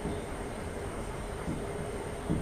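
Steady low background hum and room noise, with a faint constant tone.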